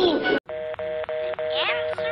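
Cartoon soundtrack: a sliding voice or melody cuts off abruptly. It is followed by a steady two-note electronic tone, broken by brief gaps, with a voice whining downward over it near the end.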